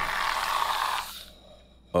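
Cartoon sound effect from a spray can held in both hands: a noisy rasp lasting about a second, then dying away.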